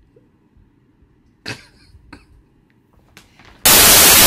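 Soft room noise with a few faint clicks and rustles and one sharper short sound about one and a half seconds in. Near the end a loud burst of static hiss cuts in and stops abruptly.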